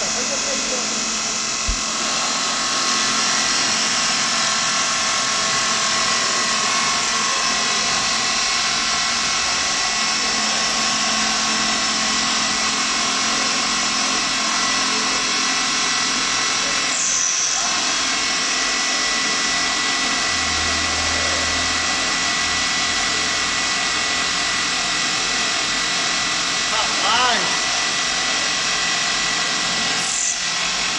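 Metal lathe running fast with a motorcycle crankcase spinning in its chuck while the boring tool cuts out the cylinder opening: a steady machining whir with several constant pitches.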